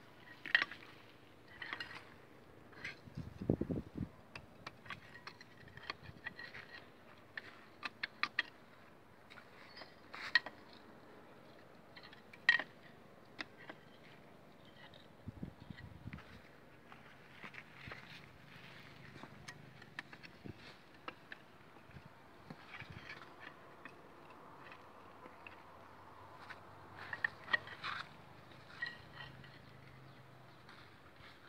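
Irregular metallic clinks and taps of an adjustable wrench and other hand tools against the steel hub of an excavator final drive, with a dull thump about three and a half seconds in and another around fifteen seconds.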